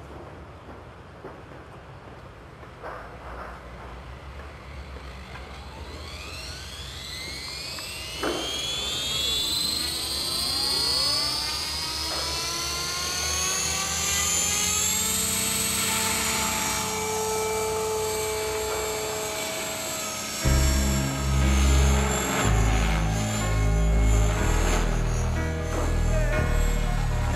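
Align T-Rex 500 ESP electric radio-controlled helicopter spooling up: its motor and rotor whine rises steadily in pitch for about ten seconds, then holds steady in flight. Music with a heavy beat comes in over it about two-thirds of the way through and is the loudest sound from then on.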